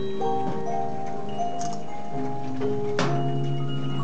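Large upright disc music box playing a tune: the rotating perforated metal disc plucks the steel comb, giving overlapping bell-like notes that ring on. A sharp click about three seconds in.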